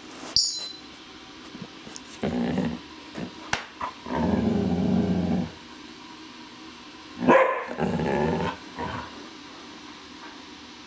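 Afghan Hound puppy giving low barks and growls in several bouts, the longest, a low sound held for more than a second, about four seconds in; territorial warning barking. A short sharp sound comes just after the start.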